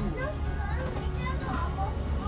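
Steady low rumble of an Alexander Dennis Enviro 500 double-decker bus running, heard on board, under a busy layer of high-pitched voices.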